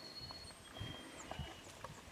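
Faint, irregular soft footfalls of a wolf and a Doberman padding over grass, with thin high bird chirps in the background.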